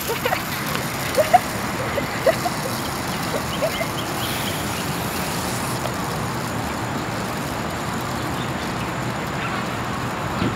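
Steady outdoor background noise with a few short, high calls during the first four seconds.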